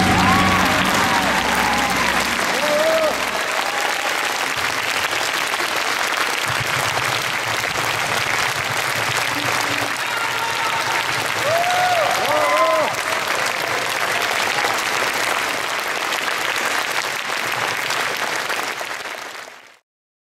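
Concert-hall audience applauding steadily, with a few voices calling out from the crowd; the applause fades out near the end.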